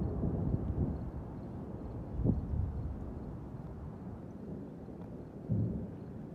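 Wind rumbling on the microphone: a low, uneven noise that swells briefly about two seconds in and again near the end.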